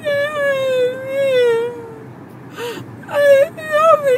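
A young woman wailing: one long cry that sags slowly in pitch, then a second, shorter wail near the end. She has just had her wisdom teeth pulled.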